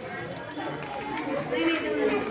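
Several people talking at once in indistinct, overlapping chatter, growing louder toward the end.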